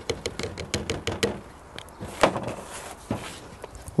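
Cane sugar tipped from a plastic lid into a glass jug of horchata, giving a quick run of light ticks and taps. This is followed by a couple of separate knocks of the lid or utensils against the jug or table.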